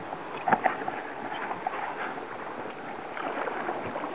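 Rushing water of a Class III whitewater rapid around a canoe, with short splashes and knocks from paddling, the sharpest about half a second in.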